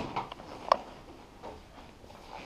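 Light clicks and one sharp tick about three-quarters of a second in, from handling the just-undocked finisher module of a Xerox production printer.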